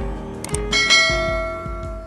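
Background music with a beat, and about three-quarters of a second in, a bright bell chime rings out over it and slowly dies away: the notification-bell sound effect of a subscribe-button animation.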